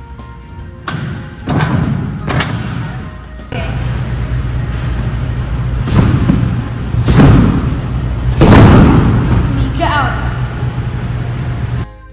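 A gymnast's feet and body landing on a tumble track and then on a trampoline bed, several heavy thuds spread through the stretch, with music playing underneath. The sound cuts off sharply near the end.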